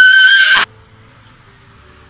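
A young girl's high-pitched wailing scream, held on one pitch, that cuts off abruptly about half a second in; after that, only faint steady background hiss.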